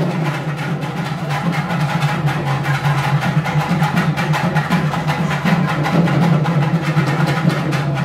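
Festival drums beaten in a fast, steady rhythm, loud and continuous, over the noise of a crowd.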